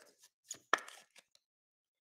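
A few short plastic clicks as a trading card is handled into a clear plastic card holder; the loudest comes about three-quarters of a second in. From about halfway through there is silence.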